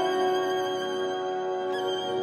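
Solo violin holding a long note with orchestra, in a late-twentieth-century orchestral work.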